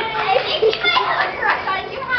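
A group of children clapping and calling out together, several voices overlapping.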